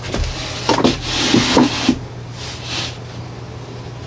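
A sheet of drywall being manoeuvred by hand into place, the board scraping and rubbing against the wall and floor in two stretches, with a few light knocks.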